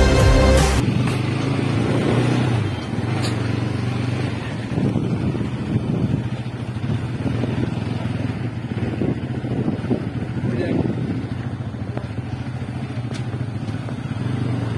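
Electronic music cuts off less than a second in. Then a motorcycle engine runs steadily as the bike is ridden slowly, with a low, even hum.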